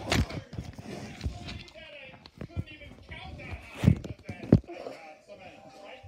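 Indistinct voices in a small room, broken by sharp thumps, with the two loudest about four seconds in.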